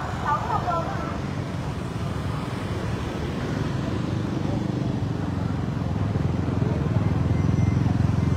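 Motorbike and scooter traffic: a steady low engine hum that grows louder toward the end, with voices briefly in the first second.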